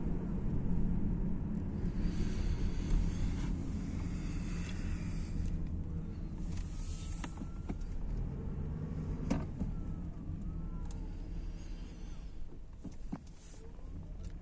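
Steady low rumble of a car driving slowly, heard from inside the cabin, with a few light clicks.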